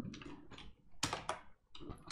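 A few keystrokes on a computer keyboard, separate clicks about a second in and near the end: pressing Ctrl+C to stop a running command-line process and answering Y to the terminate prompt.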